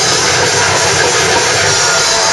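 Death metal band playing live, recorded on an overloaded camera microphone: distorted guitars and fast drumming blurred into a loud, unbroken wall of noise.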